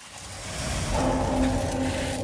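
Horror-film sound design: a swelling hiss over a low rumble, joined about a second in by a steady droning tone.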